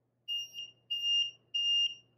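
Battery-powered liquid level indicator on the rim of a glass beeping: about three high, steady electronic beeps in a row. The beeping means the water being poured has reached its metal prongs and the cup is full.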